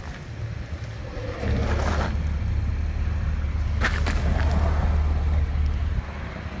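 Cadillac XT5's 3.6-litre V6 idling, heard as a steady low exhaust rumble at the tailpipes that grows louder about a second and a half in.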